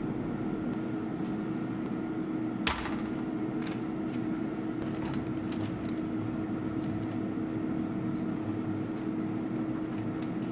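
Steady hum of a running air fryer, with a clear held tone. A single sharp click about three seconds in and a few lighter taps come from potatoes and a glass being set on a parchment-lined metal baking tray.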